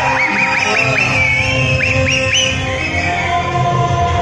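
Film soundtrack music played loud through cinema speakers, with a run of short, high, rising whistle-like swoops over it during the first half.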